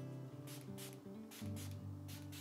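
Milani Make It Last makeup setting spray misting onto the face in a few short spritzes from the pump bottle, over soft background music.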